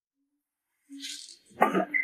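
Silence, then about a second in a breathy exhalation followed by a short voiced sound without words, a human voice.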